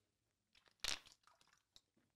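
A man drinking cola from a 2-litre plastic bottle, with one faint short sound about a second in and otherwise near silence.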